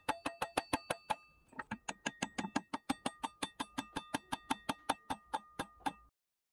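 Rapid, even hammer taps, about seven a second, on the steel brake-disc axe head and the metal pin through its wooden handle, the disc ringing with each blow. There is a short pause about a second in, and the tapping cuts off suddenly at the end.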